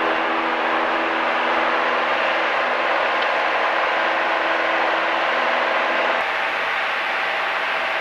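Light training aircraft's engine and propeller at takeoff power, heard from inside the cockpit during the takeoff roll and lift-off: a steady, loud drone with rushing noise. A few steady low tones in the drone fade out about six seconds in.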